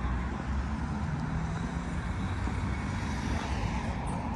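Steady low rumble of city road traffic, continuous and without distinct events.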